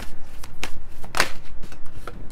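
A deck of tarot cards being shuffled by hand: a rapid, irregular run of papery flicks and snaps, with one louder snap a little past halfway.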